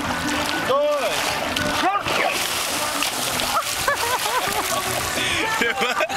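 Water splashing as men wrestle and plunge one another into waist-deep water, with short rising-and-falling shouts over the splashing.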